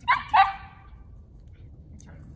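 A dog barking twice in quick succession, two short sharp barks about a third of a second apart.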